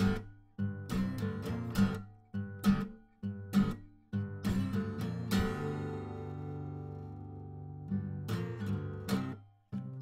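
Acoustic guitar played solo: short chords struck and sharply cut off, then about five seconds in a chord left to ring for nearly three seconds, then more short struck chords.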